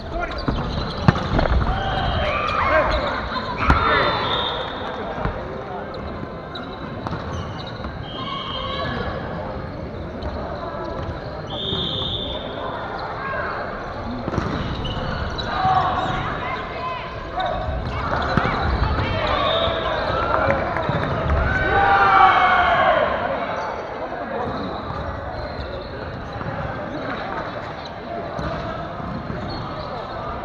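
Players' voices calling and talking in a large gym hall, with sharp smacks of a volleyball being struck, the loudest about a second in and near four seconds.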